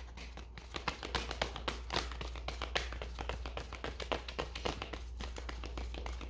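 A deck of tarot and oracle cards being shuffled by hand: a run of quick, irregular light taps and flicks of card against card.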